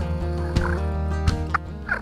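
Wild Merriam's turkey gobbling a few times over a country song with guitar and a steady beat.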